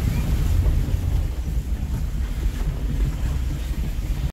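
Steady low rumble of road and wind noise inside a moving car's cabin, with wind buffeting the microphone.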